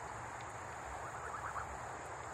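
Faint, steady high-pitched drone of insects such as crickets, with a brief faint trill about a second in.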